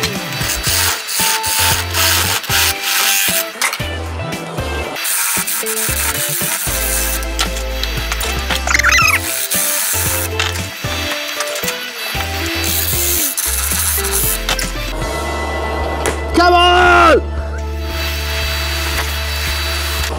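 A wood lathe spins a wooden blank while a gouge cuts into it, giving a noisy hiss of cutting that comes and goes, under background music.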